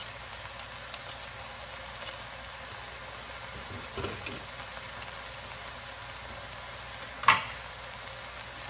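Vegetables frying in a pot with a low, steady sizzle while garlic cloves are squeezed through a hand-held garlic press over it. A few small clicks from the press, and one sharp clack near the end.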